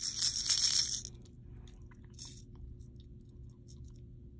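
SPRO Aruku Shad lipless crankbait shaken by hand, its rattles clattering quickly for about the first second, then stopping. A faint steady hum runs underneath.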